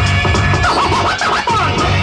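Vinyl record being scratched by hand on a turntable over a hip-hop beat. The scratches come in quick back-and-forth pitch sweeps starting about a third of the way in, over a steady thumping beat.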